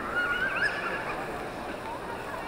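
A high-pitched, wavering voice lasting about a second, over the steady murmur of a crowd.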